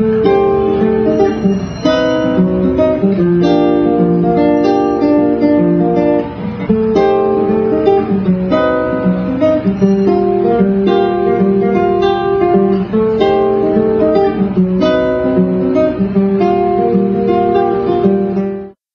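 A solo guitar playing plucked phrases mixed with chords, many notes held so they ring over one another.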